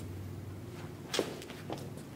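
Sneakers stepping and scuffing on a hard floor as a fighter pivots his rear foot around into his stance: one distinct step a little over a second in and a fainter one near the end.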